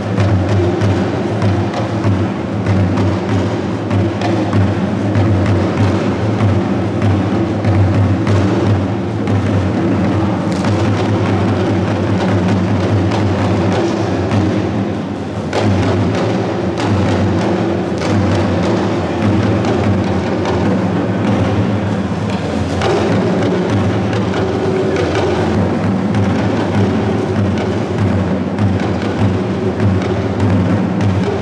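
A live drum ensemble of hourglass talking drums, played squeezed under the arm, together with a larger shoulder-slung drum, beating out a continuous dance rhythm.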